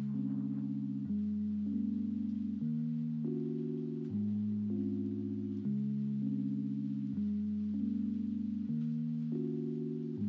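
Soft background music: sustained low chords that change about every second and a half.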